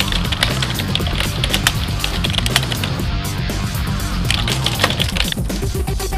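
Background music with a steady low beat, overlaid by rapid, irregular computer-keyboard typing clicks.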